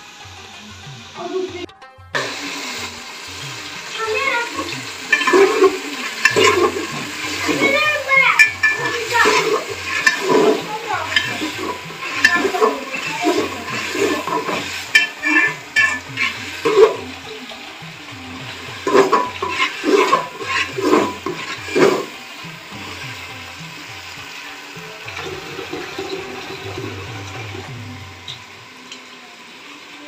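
Tap water running into a sink as rice is rinsed in a plastic colander, with repeated clattering of steel pots, bowls and utensils.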